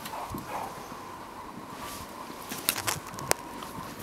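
Footsteps crunching in snow, uneven and soft, with a few sharp clicks in the last second or so.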